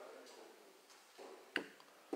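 Quiet pause in a man's talk: faint room tone, with one short click about one and a half seconds in.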